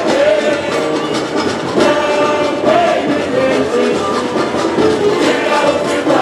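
Samba parade music: a samba-enredo sung by many voices over dense, driving samba percussion, loud and continuous.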